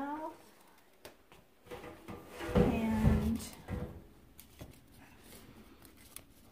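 Handling bumps and light knocks, loudest as a pair of thumps about two and a half seconds in, with a short hummed voice sound over them.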